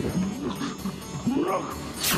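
A boy's voice making animal-like growls that slide up and down in pitch, the sound of a possessed child, over background music.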